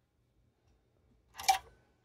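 Near silence, then about one and a half seconds in a single short plastic clack as the BKR9000 handheld radio is pulled out of the rear pocket of its BK dual charger.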